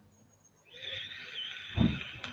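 A long, steady breathy hiss of a person drawing breath at the microphone, starting about two-thirds of a second in, with a short low thump near the end.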